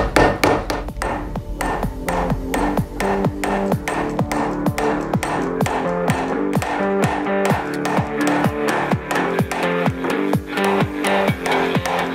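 Background electronic music with a steady beat and held chords, over light hammer taps from the rubber-faced side of a hammer driving a steel rear pistol sight sideways into the slide's dovetail.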